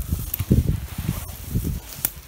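Irregular low bumps and rustling of handling and movement over a forest floor of dry pine needles, louder in the first second and fading off.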